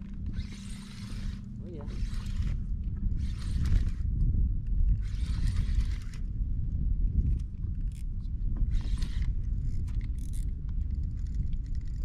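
Fishing reel whirring in about five separate bursts of a second or so as line is worked against a hooked fish, over a steady low wind rumble on the microphone.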